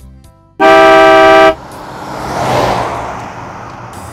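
A car horn sound effect honks once, loud and steady for about a second. It is followed by a vehicle rushing past, which swells and then fades over the next couple of seconds.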